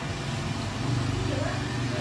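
A person's voice over a steady low hum that grows louder about a second in.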